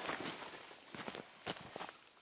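Footsteps on dry grass and forest litter: a handful of irregular steps.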